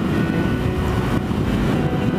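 125cc scooter riding at speed: wind rushing over the microphone, with the engine running steadily underneath.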